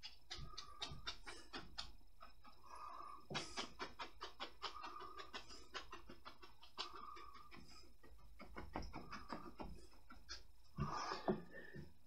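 Stiff bristle brush dabbing and scrubbing oil paint onto stretched canvas: a faint, irregular run of quick scratchy taps, several a second, with a few short dragging strokes and a louder flurry near the end.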